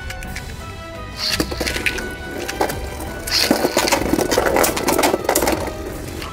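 Two Beyblade Burst spinning tops clashing in a plastic stadium: after about a second, a rapid rattling clatter of hard knocks as they strike each other and the walls, densest in the middle, with one hit nearly bursting Variant Lucifer. Background music plays underneath.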